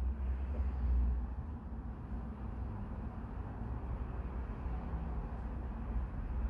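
A steady low hum under faint, even background noise, with no distinct events.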